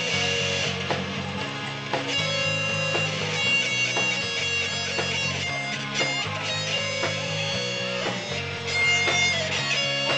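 Live rock band playing an instrumental passage: electric guitars over a bass line, with drum hits, and no singing.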